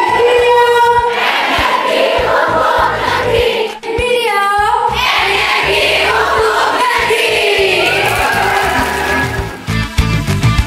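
Music with voices singing together in long held notes and no steady beat. About four seconds in the sound dips briefly and a wavering high note slides up and down.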